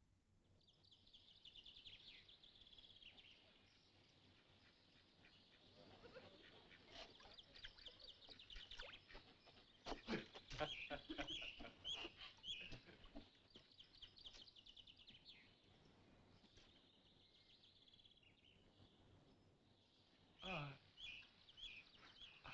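Faint birdsong: short high chirps and trills, on and off, with a denser run of calls in the middle.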